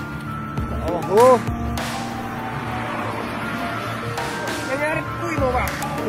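Road noise from a moving vehicle under background music with long held notes. A short voiced exclamation comes about a second in, and a man begins talking near the end.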